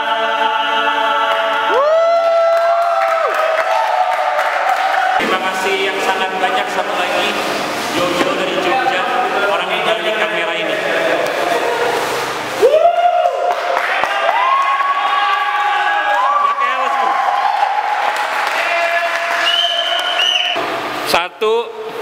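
A group of men's voices singing together in harmony, holding long notes and sliding up into them.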